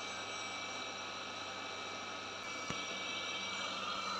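Ecovacs Deebot T9 robot vacuum running, a steady hum with a faint whine as it turns on the spot, with a single click about two-thirds of the way in. Spinning clockwise instead of driving forward is the symptom of a faulty anti-drop (cliff) sensor.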